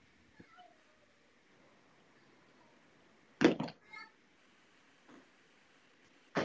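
Faint room noise with a sharp knock about three and a half seconds in, followed at once by a brief high-pitched cry.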